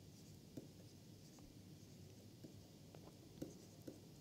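Faint taps and light scratches of a stylus writing on a tablet screen, a few soft ticks over near-silent room tone.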